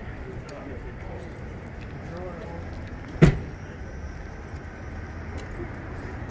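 Steady city street noise with low traffic hum and faint voices in the background. A single sharp thump a little past three seconds in is the loudest sound.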